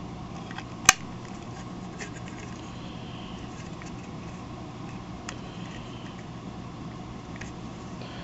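Small plastic Galoob Action Fleet TIE Fighter toy being handled: one sharp click about a second in as a plastic part is plugged into place, then a few faint plastic taps over a steady low hum.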